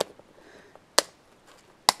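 Three sharp clicks about a second apart from a small clear plastic box being handled on a table.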